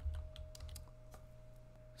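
Typing on a computer keyboard: a quick run of light key clicks in the first second or so, then a few scattered ones.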